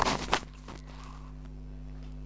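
Two quick clicks in the first half-second as small metal parts are handled on the shaft of a Bajaj Pulsar 150 crankcase, then a steady low hum.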